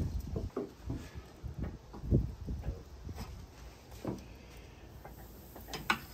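Scattered light knocks and clicks of handling at a charcoal grill, metal tongs against the cooking grate, the loudest knock about two seconds in.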